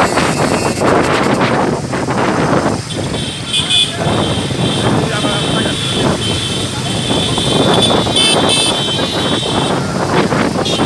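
Motorcycles riding together in a procession, with wind buffeting the microphone and voices over the noise. A vehicle horn sounds from about three seconds in, with loud blasts near the middle and again near the end.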